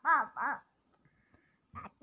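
A toddler babbling two short syllables, each rising then falling in pitch, with a brief vocal sound near the end.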